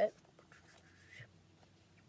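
Faint rustling and rubbing as a rolled crochet hook holder is unwrapped and turned over in the hands.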